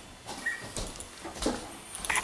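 Handling noise of a player getting up from a wooden chair and carrying an acoustic guitar away: a few knocks and bumps, the loudest about a second and a half in, with a short squeak about half a second in.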